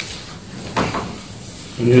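Paper being handled on a meeting table: a small click, then a short rustle just under a second in. A man starts speaking near the end.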